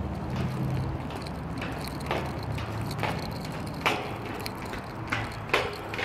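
Footsteps going down steel open-grating stair treads: about five sharp, uneven knocks on the metal.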